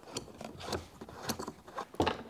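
Adjustable lumbar support behind an office chair's mesh backrest being pushed out by hand: faint, irregular clicks and rubbing from the plastic mechanism and mesh.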